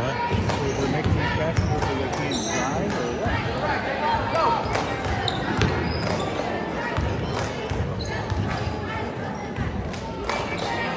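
Basketball game sounds in a gym: a basketball bouncing on the hardwood floor in repeated thumps, with players' and spectators' voices throughout and short squeaks.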